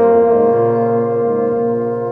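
Brass quintet of two trumpets, French horn, trombone and tuba holding a long sustained chord, with the tuba's low note changing underneath it.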